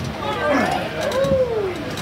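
Men yelling and hollering without clear words over crowd hubbub while an arm-wrestling match is being pulled, with a long drawn-out shout near the end.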